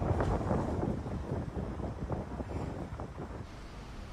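Wind buffeting the microphone outdoors, a gusty low rumble that is strongest in the first second or so and eases off toward the end.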